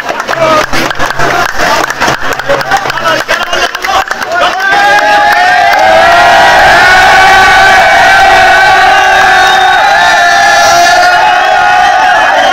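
A crowd of young people shouting and cheering loudly, with many sharp percussive hits through the first four seconds; after that the voices join in a loud, sustained group chant.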